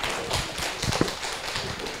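Small audience applauding: many hands clapping at once in a dense, irregular patter.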